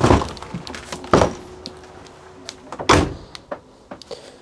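Three heavy footsteps thudding on the motorhome's entrance step and floor, about a second and a half apart, as someone climbs in through the habitation door.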